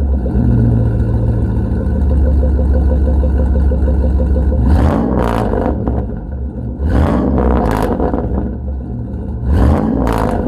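Exhaust of a 2005 Chevy Silverado's 5.3-litre V8 with the catalytic converters deleted, running through a Thrush Rattler muffler and side-exit pipe. It idles steadily, then is revved in short blips about five seconds in, again around seven to eight seconds, and near the end.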